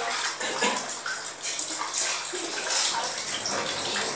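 Water running and splashing, an uneven hiss, with faint voices in the background.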